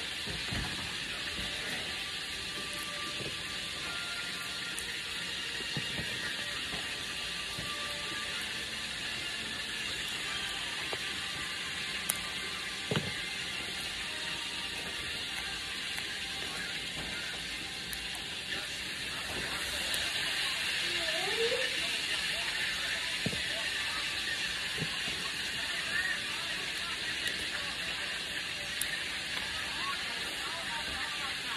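Freshly harvested bush green beans snapped in pieces by hand: several crisp snaps at irregular intervals, the sound of firm, fresh pods. A steady hiss runs underneath.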